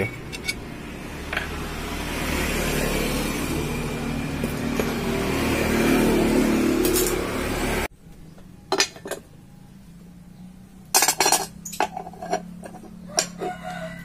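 Handling noise of motorcycle engine covers being moved about on a workbench: a steady rustling and scraping first, then, after an abrupt cut, a few sharp clinks and knocks of metal parts.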